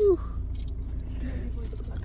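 Low, steady rumble of a taxi heard from inside the cabin as it slows to a stop, with a short child's syllable at the start.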